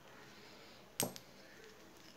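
A single sharp metallic clink about a second in, with a faint second tick just after it, as a metal motorcycle engine cover is handled; otherwise quiet.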